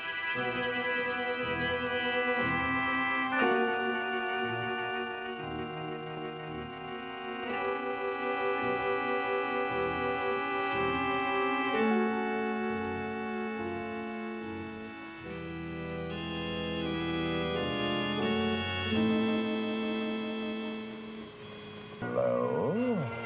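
Organ music playing slow, sustained chords that change every few seconds, with a wavering tremolo on some held notes.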